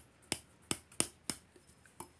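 About five light, sharp clicks spread over two seconds as a metal airgun tube assembly is handled.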